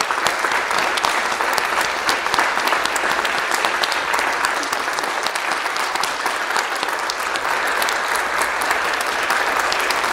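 A church congregation applauding steadily, many hands clapping together, with no break.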